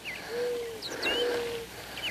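A dove cooing: two long, level, low coos, with a few faint, higher bird chirps around them.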